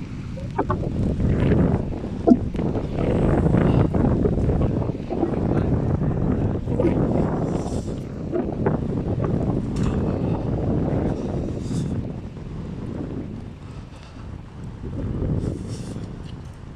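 Wind buffeting the microphone outdoors: a loud, uneven low rushing that swells and fades, easing for a few seconds near the end before picking up again.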